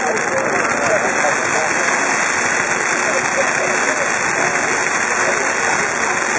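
Ground fountain fireworks spraying sparks with a steady hiss and no bangs, while a crowd of onlookers talks.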